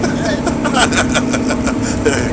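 Steady low engine drone heard inside the passenger cabin of a ferry, with faint voices in the background.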